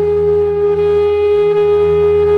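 Background music: a flute holds one long, steady note over a low, constant drone.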